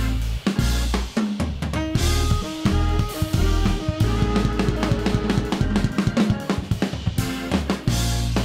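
Live jazz-funk band with the drum kit out front: busy snare, bass drum and cymbal playing, over electric bass and sustained keyboard or organ chords.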